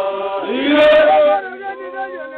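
Samburu traditional song: a group of voices chanting together, several held notes overlapping and sliding between pitches, growing louder for about a second in the middle.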